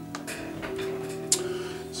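Soft background guitar music on sustained notes, with two sharp clicks, one just after the start and one past the middle.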